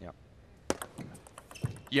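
A table tennis ball making a few sharp clicks about a second in, against a quiet background.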